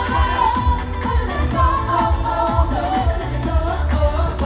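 Pop song with a singing voice over a steady, heavy bass beat.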